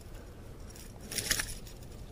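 A small hooked bass thrashing on the line as it is lifted out of the water, heard as one brief splashy rattle about a second in.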